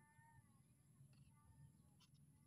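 Near silence, with one faint, short animal call near the start that has a rise-and-fall like a cat's meow.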